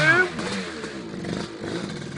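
Dirt bike engine revving briefly, then the revs falling away to a lower run as the rider comes back off a failed climb of a woodland bank.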